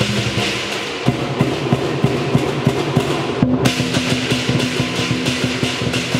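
Chinese lion dance percussion ensemble: large drums beaten in fast, dense strokes under the crashing of many pairs of hand cymbals, with a gong ringing. The cymbals break off for a moment about halfway through, then come back in.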